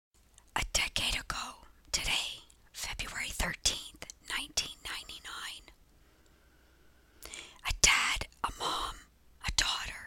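Whispering voice in short, breathy phrases, with a pause of about a second and a half past the middle.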